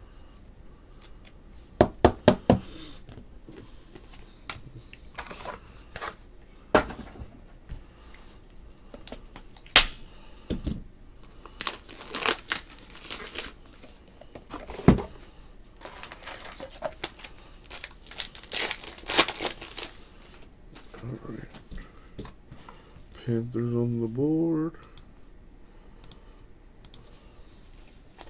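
Trading card packs being torn open and cards handled: a scattered series of sharp rips, crinkles and clicks of wrapper and card stock.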